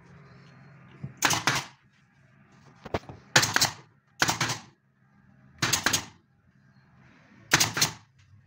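Pneumatic nail gun firing fasteners into a plywood enclosure panel: five sharp shots, spaced about one to two seconds apart.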